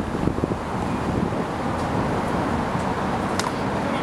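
Wind buffeting the microphone, with one sharp crack of a pitched baseball striking leather or bat about three and a half seconds in.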